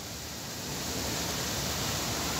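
Strong gusty wind rushing through palm trees, a steady noise that grows a little louder about half a second in.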